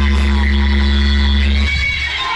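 Loud DJ music on a large sound system: a deep bass drone is held with higher tones above it, then drops out suddenly near the end.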